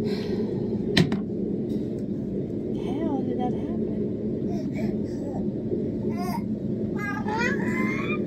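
Six-month-old baby making short high-pitched babbling sounds a few seconds in, then a longer rising squeal near the end. A sharp tap comes about a second in, over a steady low hum.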